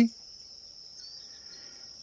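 Crickets chirring steadily in the background, a continuous high-pitched trill.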